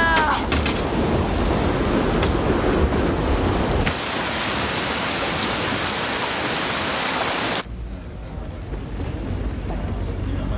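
Storm sound on a film soundtrack: heavy rain with low rumbling thunder. About four seconds in it switches abruptly to a brighter hiss of rain, and at about seven and a half seconds it drops to a quieter rain with a low rumble underneath.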